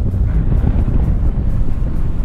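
Wind buffeting the microphone of a handheld camera during a parachute descent under an open canopy, a loud, steady low rumble.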